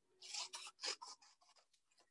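Scissors cutting through file folder card stock: about three short, faint snips in the first second.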